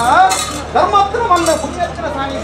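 Light metallic clinks, a few times, over a loud voice with rising and falling calls.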